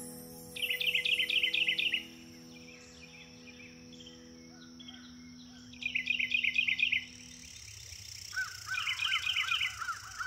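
Songbird singing in three bursts of rapid, repeated high chirps, each about a second long, near the start, around the middle and near the end, with slower, lower chirps coming in near the end. Under it the held notes of a soft piano ring on and die away about three quarters of the way through.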